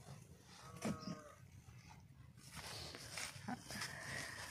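A cow lowing faintly in the distance with one short call about a second in. It is followed by soft scraping as a shovel works dry, sandy soil into a planting hole.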